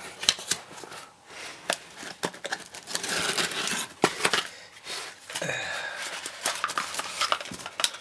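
Cardboard packaging being handled: flaps scraping and an inner cardboard sleeve sliding out of its box, with rustling and light taps, then paper leaflets shuffled.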